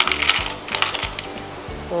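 Ice cubes clinking against a drinking glass as they are spooned in: a scatter of light, sharp clicks. Background music with a steady beat runs underneath.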